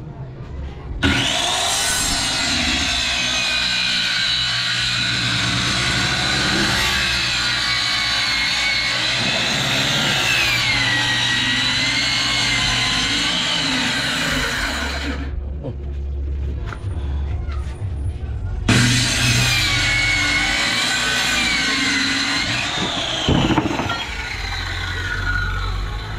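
Corded circular saw cutting plywood, its whine sagging and recovering in pitch as the blade works through the board. A long cut starts about a second in and runs for roughly fourteen seconds, then stops. A second, shorter cut of about four seconds follows and winds down near the end.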